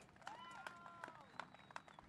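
Near silence, with faint, distant voices.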